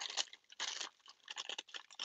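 Thin black plastic bag and bubble wrap crinkling in hands as a vinyl figure is unwrapped, in several short, irregular rustles.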